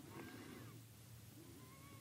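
Near silence: room tone, with a few faint short gliding tones.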